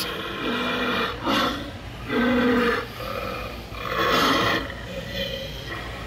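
Animated howling werewolf Halloween prop playing recorded wolf growls through its speaker, in several separate bursts of about half a second to a second, with short pauses between.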